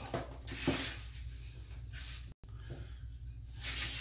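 Faint handling and rustling noises over a low steady hum, with a few soft swells. The sound cuts out completely for an instant in the middle.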